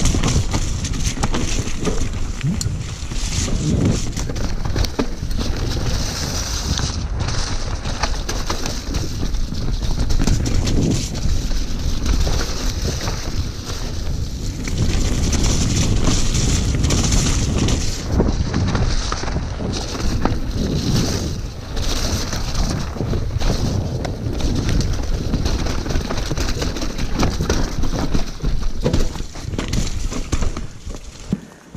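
Mountain bike descending a rough, muddy trail at speed: a constant loud rush of wind on the microphone, with the tyres churning through slick mud and many short rattles and knocks from the bike over the ruts.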